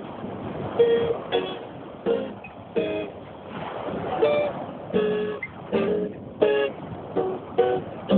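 Small steel-string acoustic guitar picked by hand: an unhurried melody of single notes and small chords, about one or two a second, each ringing briefly before the next. A steady rushing noise of surf lies beneath.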